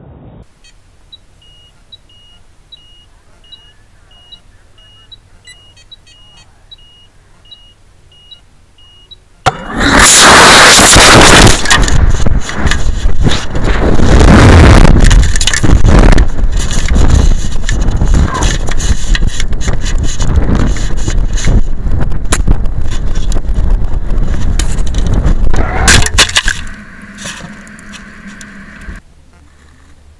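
A short electronic beep repeats about three times every two seconds. About ten seconds in, a sudden, very loud rush of air noise over the rocket's onboard camera lasts about sixteen seconds, falling as the rocket comes down, then eases off and goes quiet near the end.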